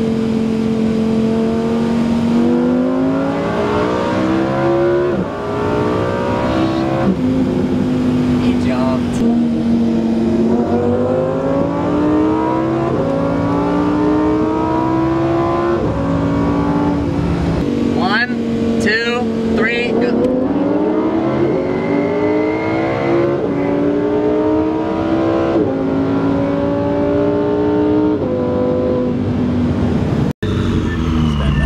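Lamborghini Huracán Performante's naturally aspirated V10, heard from inside the cabin, accelerating in repeated pulls. Its pitch climbs and then drops back at each upshift, many times over.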